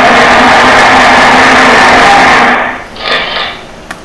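A loud scraping rub lasting about two and a half seconds, then a brief second scrape about three seconds in.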